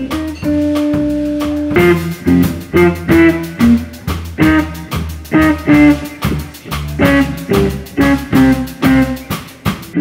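Live guitar, string bass and drum trio playing. A guitar note is held for about the first two seconds, then the band punches out a run of short accented notes with drum hits, about two a second.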